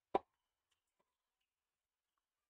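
A tennis ball bouncing once on a hard court: a single sharp knock just after the start, followed by a couple of very faint ticks.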